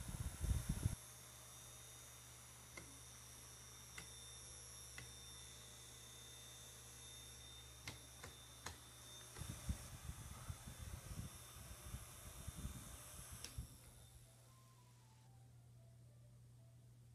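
Caframo Tiny Tornado battery-powered personal fan running with a faint, steady motor hum and whir. Light clicks come now and then, and from about nine to thirteen seconds in there are low bumps and rubbing as the fan is handled. Its higher whine stops at about thirteen seconds in.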